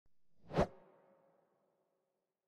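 An intro transition sound effect: a single short whoosh that swells and peaks about half a second in, followed by a faint ringing tail that fades away.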